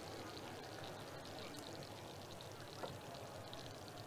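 Faint steady sizzle with scattered light crackles from a frying pan on an electric stove.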